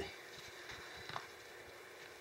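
Faint squishing of a gloved hand working thick monster mud (joint compound mixed with latex paint) in a plastic bucket, with a soft click a little over a second in.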